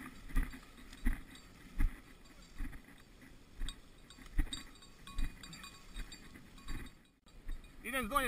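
Footsteps through tall dry grass and weeds: dull thuds about one step every 0.8 seconds, with rustling of brushed vegetation. The sound cuts out briefly near the end.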